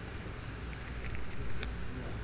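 Light rustling and small scattered clicks from a synthetic work glove and its cardboard hang-tag being handled close to the microphone, over a steady low hum.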